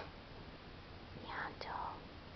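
A person whispering briefly, a little over a second in, in a quiet room.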